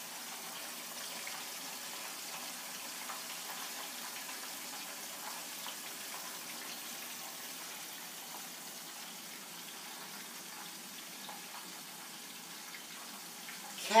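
Catfish fillets frying in oil in a covered skillet: a steady sizzling hiss that eases slightly in the second half.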